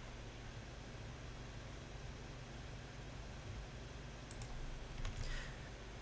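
Quiet room tone: a low steady hum and faint hiss, with a few soft clicks, one about four seconds in.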